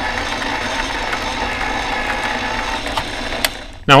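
RCBS electric case prep station's motor running steadily, spinning its tools with a brass rifle case held on one, and fading out just before the end.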